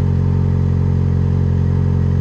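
Yamaha XJ6's inline-four engine idling steadily with the bike at a standstill.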